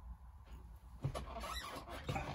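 Quiet room tone: a low steady hum, with a few faint small clicks and rustles in the second half.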